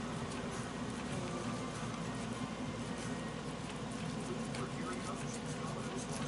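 Kitchen knife cutting cooked corn kernels off the cob into a dish: faint, soft cutting and scraping sounds over a steady low hum.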